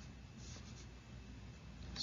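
Faint, light scratching of a stylus on a pen tablet over a low, steady hum.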